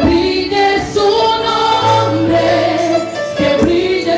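Female lead singer singing a Spanish worship song into a microphone, with a women's choir singing along. A held low note comes in under the voices about two seconds in.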